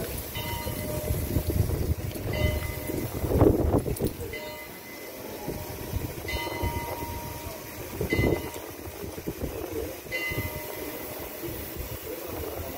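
A short steady tone with several pitches, sounding about six times, roughly every two seconds, over rumbling street noise that swells louder twice.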